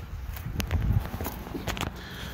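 Irregular footsteps and scuffing on a gritty asphalt driveway, with the rustle of a phone being handled as the person walks.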